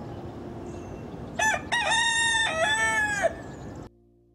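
A rooster crowing once, a full cock-a-doodle-doo of about two seconds starting about one and a half seconds in, over a steady background hiss that cuts off near the end.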